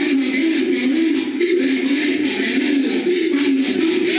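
A man's voice amplified through a church sound system, loud and drawn out in a wavering, sung tone.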